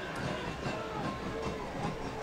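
Low, steady stadium ambience of a soccer match broadcast with a faint music bed underneath.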